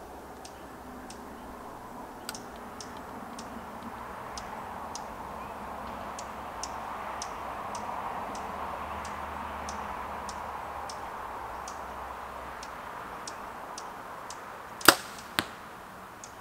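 A compound bow shot near the end: a sharp crack as the string releases an arrow tipped with a fixed-blade Annihilator broadhead, then about half a second later a smaller click as the arrow strikes the foam target 40 yards off. Before the shot the background is quiet, with a faint high tick repeating about twice a second.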